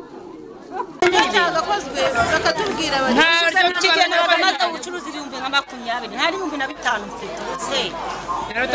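Speech only: several women talking over one another, starting about a second in.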